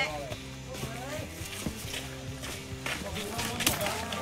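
Indistinct voices of hikers over a held, steady musical tone, with a few sharp scuffs of footsteps on the dirt trail.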